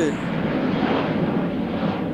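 Aircraft passing overhead: a steady rushing noise, well above the room sound of an outdoor interview.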